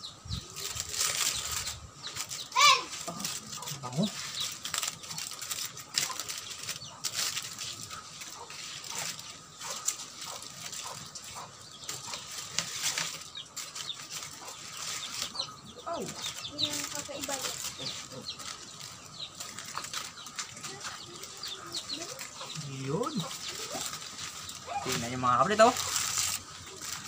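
Aluminium foil crinkling and rustling in many short crackles as metal tongs and a fork pull it open around a whole chicken.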